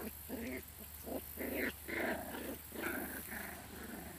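Miniature schnauzer puppies growling in play: a run of short, rough little growls, several to a second or so, as they tussle over a toy.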